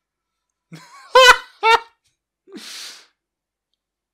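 A man laughing: two short voiced bursts about a second in, then a breathy exhale about a second later.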